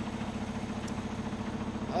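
Semi truck's diesel engine idling, a steady low sound with a fine, even pulse.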